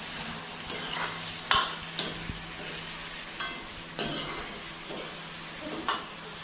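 A metal spatula stirring and scraping food in a wok over a gas burner, with a steady sizzle of frying underneath. A few sharp scrapes stand out, the loudest about a second and a half in.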